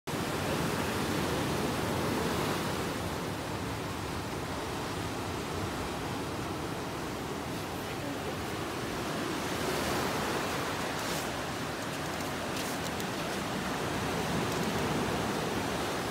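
Ocean surf washing in on the shore, a steady rush of noise that swells slightly now and then.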